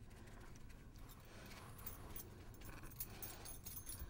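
Faint handling sounds: a few light clicks and rustles as hands take hold of the silver-leafed lamp, more of them in the second half, over a low steady hum.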